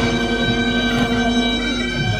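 Traditional Korean royal procession band music (daechwita): reedy shawm-like wind instruments holding long steady notes over drum beats.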